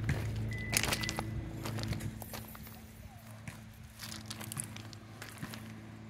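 Faint, irregular crunches and clicks of footsteps on loose gravel, over a steady low hum.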